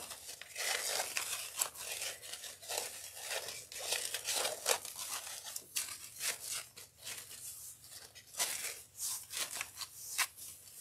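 Ribbon loops of a large bow being fluffed and pulled into place by hand: an irregular crinkling rustle of glitter and striped fabric ribbon.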